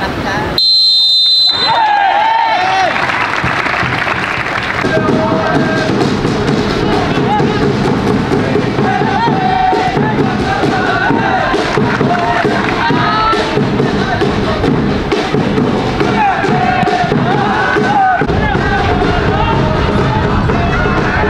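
A referee's whistle blows once for kick-off, about half a second in. After it come shouting voices over music, carrying on through the play.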